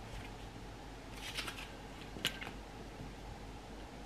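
A ceramic gingerbread teapot being handled and turned over: a short rustle about a second in, then a single sharp tap a little after two seconds.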